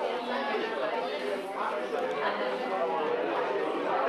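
Indistinct chatter of many people talking at once, a steady murmur of overlapping voices with no single speaker standing out.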